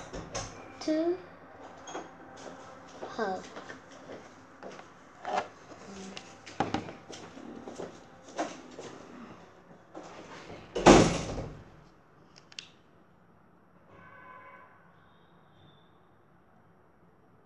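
A child's voice speaking quietly in short fragments, with small clicks and knocks of handling. A louder thump lasting about a second comes about eleven seconds in, then it goes quiet.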